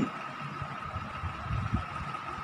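A pen writing in a paper notebook, with soft low bumps of the hand and page being handled, mostly in the second half. A faint steady high tone hums underneath.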